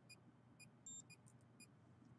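Faint, short electronic chirps from a handheld meter, about two a second, with one longer, higher beep about a second in.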